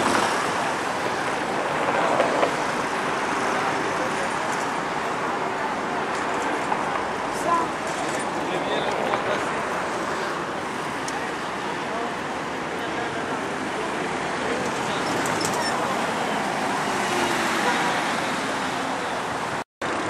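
Steady road traffic on a busy city street: an even wash of car and scooter engines and tyres passing. The sound drops out for a split second near the end.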